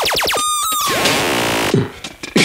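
littleBits Synth Kit, the magnetic modular analog synthesizer made with Korg, sounding a fast train of falling pitch sweeps, about seven a second. About half a second in it breaks into a noisy hiss with a tone sliding downward, which cuts off sharply near the end.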